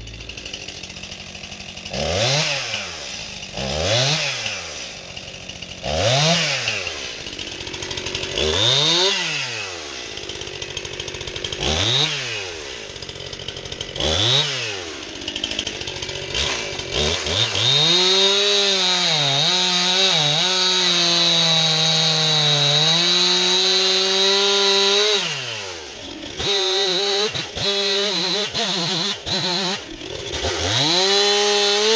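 Stihl MS261 C-M two-stroke chainsaw: a string of short revs up and back down to idle every two to three seconds, then a long cut held at high revs, the pitch wavering and dipping as the chain bites into the log, ending in a few short broken revs.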